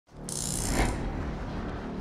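A brief scraping, rustling noise of something moving, loudest just under a second in, fading into a steady low hum.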